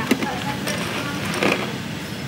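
Metal scoop digging into nuts in a glass jar, with two short rattles, one just after the start and one about one and a half seconds in, over steady room noise.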